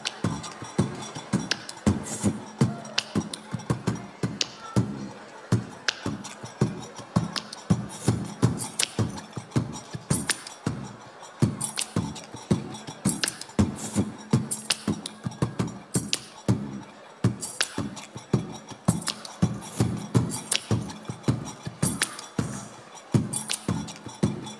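A live-looped percussion groove: a steady beat of sharp clicks and thumps, several a second, with a low sustained tone coming and going underneath.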